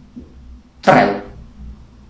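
A pause between speech, holding only a low steady hum, with a single short spoken syllable about a second in.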